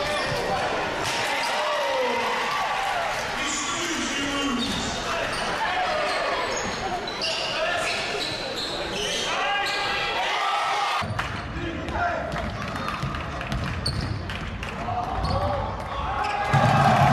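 Game sound from an indoor basketball game in a gym: a basketball bouncing on the court and players and spectators calling out, no clear words. The sound changes abruptly about eleven seconds in.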